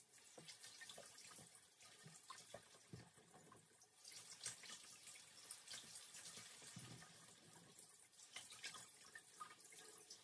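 Kitchen tap running faintly as rhubarb stalks are rinsed under it in the sink, with small knocks and splashes from the stalks. The water sound grows stronger about four seconds in.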